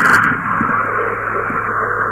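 Steady hiss with a low hum on a caller's phone line.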